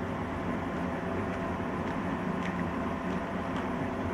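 Steady low room hum and hiss, with a few faint light clicks from the dolls and camera being handled.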